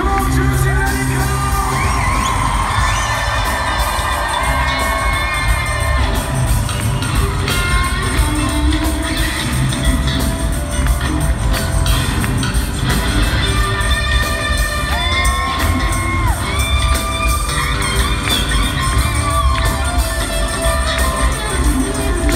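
Live rock band playing, with an electric guitar solo of held and bent notes over bass and drums, and the crowd cheering, heard from among the audience.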